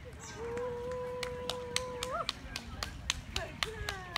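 A spectator cheering and clapping at the end of a pony's round: one long held "whoo" on a single pitch that flicks upward as it ends, then a couple of falling calls, over steady claps at about four a second.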